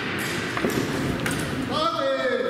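Voices shouting and laughing in a large echoing hall, with a couple of sharp knocks of weapon against shield from the sparring gladiators. A voice calls out near the end.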